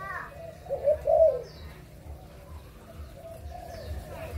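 Spotted dove cooing: a short phrase of two quick notes and a longer one about a second in, then quieter.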